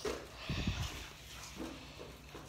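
A short low thump about half a second in, with faint rustling of Christmas-tree fir branches.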